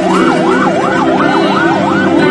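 Ambulance siren in a fast yelp, its pitch sweeping up and down about four times a second.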